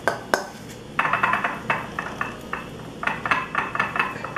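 Spoon clinking and scraping against a metal mixing bowl while scooping out soft dough: two sharp clinks near the start, then quick runs of taps and scrapes about a second in and again near the end.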